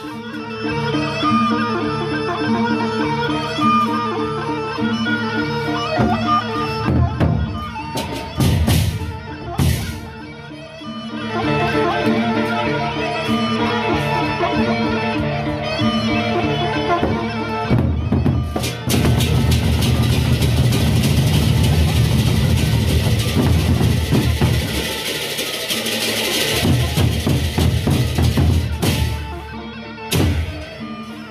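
Live Lombok gendang beleq ensemble: large double-headed barrel drums beaten with sticks, with cymbals and a repeating melodic pattern. About two-thirds of the way in the playing turns into a louder, denser passage of drumming and crashing cymbals.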